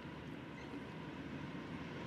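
Faint, steady rumble of a distant freight train approaching, growing slightly louder.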